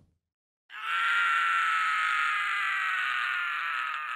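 A man's long cry of pain, starting just under a second in and sagging slowly in pitch as it goes on: the yell of someone just struck by a crossbow bolt.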